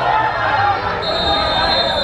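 Several voices shouting at once on an outdoor football pitch. A high, thin steady tone joins about halfway through.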